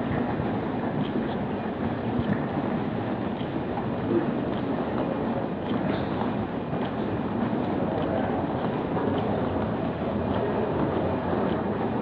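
Steady rumbling noise of an airport terminal corridor heard while walking through it, with a few faint ticks.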